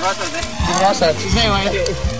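People's voices talking over background music with a steady low bass.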